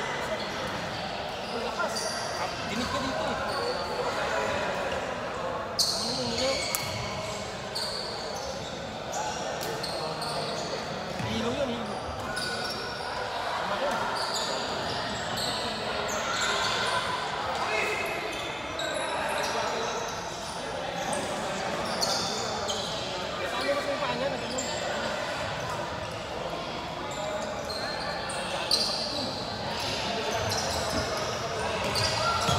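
A basketball bouncing repeatedly on a hardwood gym floor, with a steady murmur of players' and spectators' voices echoing in a large hall.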